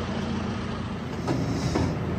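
Tractor's diesel engine running steadily at low revs, a continuous low hum.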